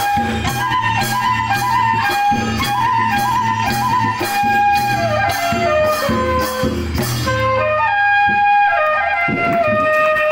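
Traditional Bodo dance music: a flute melody over a steady beat of percussion strokes. About three quarters of the way through the percussion stops and the melody steps downward on its own.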